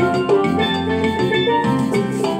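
Steelpan (steel drum) played solo with mallets: a quick run of struck melody notes that ring on and overlap.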